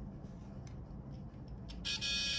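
A few faint clicks of small contacts being handled, then about 1.7 s in a homemade spark gap transmitter starts buzzing loudly. This is its coil-and-contact interrupter vibrating and sparking across the gap as the contact finally connects.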